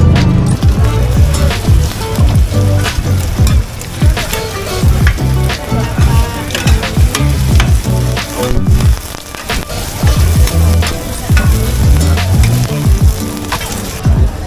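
Oil sizzling in a wide, shallow pan as an egg mixture and cubes of turnip cake fry, with metal spatulas scraping and clacking against the pan over and over.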